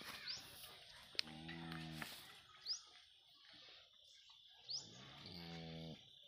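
A crossbred Holstein Friesian cow gives two low moos to her newborn calf, one about a second in and one near the end, each under a second long. Birds chirp in the background.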